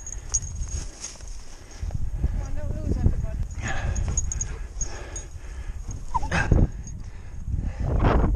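Steady low rumble of wind buffeting a body-worn camera's microphone, with brief indistinct voices and a short louder sound a little past six seconds in.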